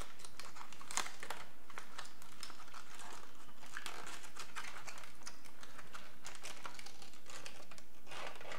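Aluminium foil being slowly peeled off a silicone mold, crinkling in an irregular string of small crackles.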